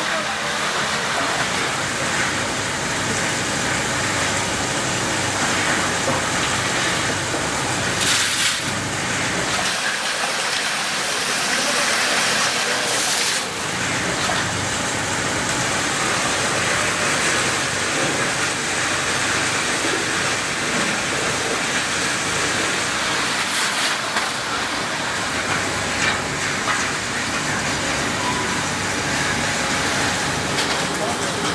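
Steady rush of running water and machinery in a washing tank of shredded plastic flakes, with three short louder sounds spread through it.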